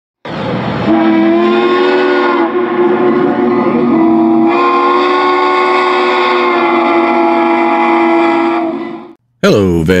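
A steam locomotive's chime whistle blowing one long blast of about nine seconds, several notes sounding together, the chord shifting a couple of times before it trails off.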